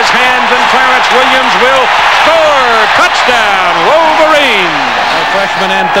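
A man's voice speaking excitedly, with wide swoops of pitch, over the steady noise of a stadium crowd, as heard on a television football broadcast.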